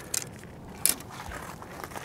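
Footsteps on crushed-rock gravel: a few scattered sharp crunches and clicks, the loudest just under a second in.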